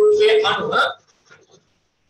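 A man speaking in Sinhala, lecturing, for about the first second, then a pause with only a couple of faint ticks in a quiet small room.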